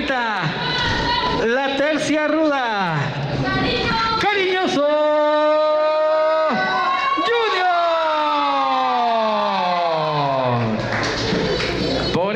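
A wrestling ring announcer's voice calling out in long, drawn-out syllables, pitch held for over a second and then slid slowly down in a long falling call.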